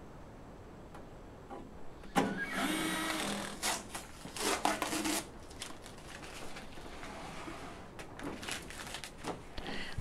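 Cordless drill driving screws into a kiln's sheet-metal back panel. The motor runs twice: once for about a second and a half starting two seconds in, then briefly again around four and a half seconds. Faint clicks and handling noises follow.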